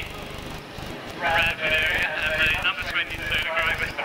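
Low, evenly pulsing engine beat of a Scammell Scarab three-wheeled tractor unit moving slowly. From about a second in, an indistinct voice sounds over it.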